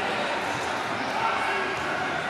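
Indistinct chatter of many voices echoing in a large sports hall, with an occasional dull thud.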